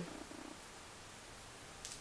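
Faint, steady low background noise with no distinct event.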